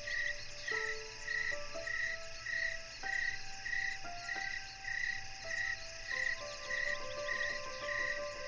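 Slow solo piano, single held notes and sparse chords entering every second or so, over a bed of chirping insects, one call pulsing steadily about three times every two seconds.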